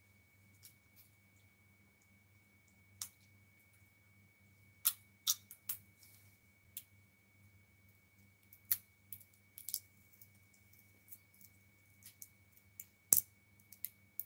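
Scattered sharp clicks and taps at irregular intervals, a cluster about five seconds in and the loudest near the end, over a faint steady low hum and a thin steady high tone.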